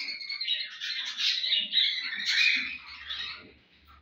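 A roomful of caged pet birds (budgerigars, finches, cockatiels) chirping and chattering together in a dense, overlapping chorus that thins out about three and a half seconds in.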